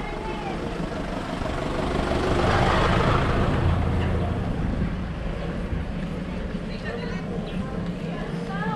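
A small truck passing close by a bicycle, its engine and tyre noise swelling to a peak about three seconds in, then fading.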